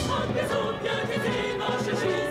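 Large mixed choir singing with a symphony orchestra accompanying, strings playing beneath the voices.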